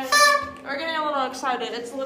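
A party horn blown in one short, steady blast just after the start, followed by girls' voices.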